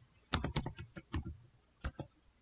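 Computer keyboard keystrokes: a quick run of several keys about a third of a second in, followed by a few single keystrokes, the last one near the end.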